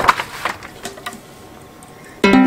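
A short cluster of clicks and knocks from handling in the first half second, then quiet room tone.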